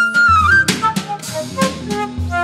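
Live jazz: a flute holds a long high note that dips and rises at its end, then a drum-kit hit with a cymbal crash comes about two-thirds of a second in. Shorter flute notes follow over upright bass notes and drums.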